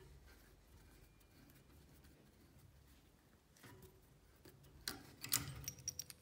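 Faint scraping of a mini pipe cutter being turned around a thin brass tube held in a vise, then a few louder sharp clicks and knocks near the end.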